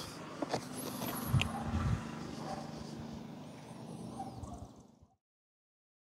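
Faint background noise with a low steady hum and a few soft handling knocks in the first two seconds, cutting to silence about five seconds in.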